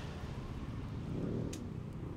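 City street traffic: a low, steady rumble of cars on the road, swelling slightly about a second in as a vehicle moves past.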